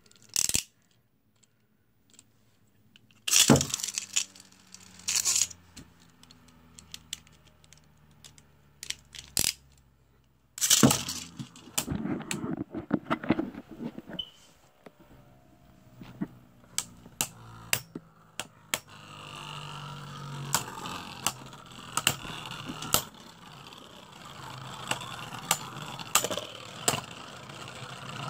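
Beyblade Burst spinning tops in a plastic stadium. After a few loud clacks in the first ten seconds, they spin with a steady low whir and clack against each other and the stadium walls many times.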